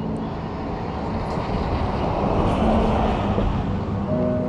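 A car driving past on the road, its tyre and road noise swelling to a peak about two and a half seconds in and then easing off.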